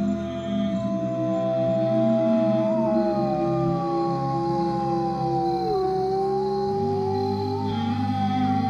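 Two long canine howls over sustained ambient music. One howl, already going, is held and then slides down in pitch about six seconds in; a second, higher howl joins about a second and a half in and is held to the end.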